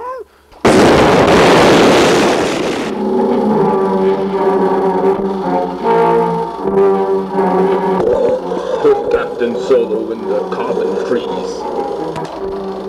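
A loud blast-like burst of noise on the soundtrack, starting about a second in and lasting about two seconds, followed by music with long held notes.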